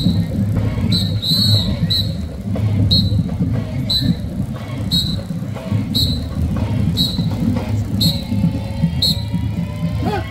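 A whistle blown in short, evenly spaced blasts about once a second, marking the step for a marching parade contingent, over steady low drumming.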